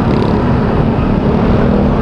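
Honda Click 125i scooter's single-cylinder engine running at low speed in dense traffic, with the engines of surrounding motorcycles and cars. It is a steady, loud running sound with a wavering low tone.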